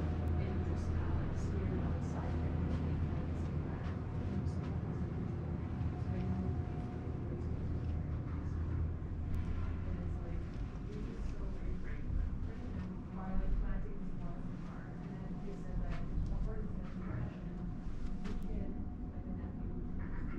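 Faint, indistinct voices of other people in the room over a low steady hum. The hum drops away about halfway through, and the voices are most noticeable in the second half.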